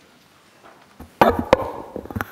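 Lectern gooseneck microphone being handled and adjusted: a click about a second in, then a run of heavy knocks and rubbing thumps picked up directly by the mic.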